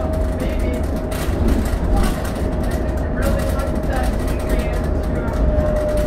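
Cabin sound of a 2006 New Flyer D40LF diesel transit bus on the move: a heavy low engine and road rumble with interior rattles, and a thin steady whine that sinks slightly in pitch.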